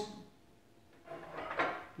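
Metal knife and fork lightly scraping and clinking as they are picked up from a plate on a wooden table: two short, faint sounds in the second half, after a man's voice trails off.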